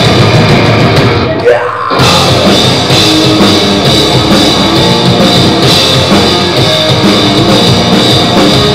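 Metal band playing live at full volume: distorted guitar, bass and drum kit. About a second in the band drops out briefly, leaving a lone note sliding upward, and the full band comes back in about two seconds in.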